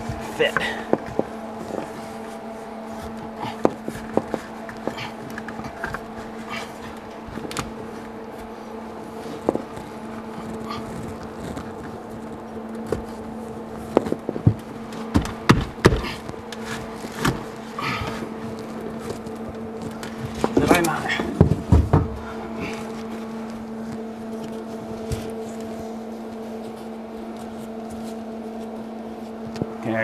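Scattered knocks, clicks and scrapes as a square wall-mount vent fan is pushed and worked into a wall opening to make it fit, over a steady low hum.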